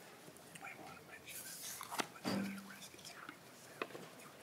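Quiet hearing-room sounds: faint whispered talk and small handling noises. There is a sharp click about two seconds in, a short low hum just after it, and another click near the end.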